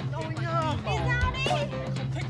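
Background music with a steady low note, with several voices calling and shouting over it that carry no clear words.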